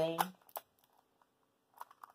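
Clicks of a Cyclone Boys magnetic skewb puzzle being turned by hand. There is one click about half a second in, then a few quick clicks near the end.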